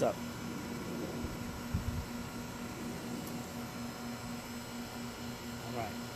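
A steady low hum over faint background hiss, with a few soft low thumps about two seconds in.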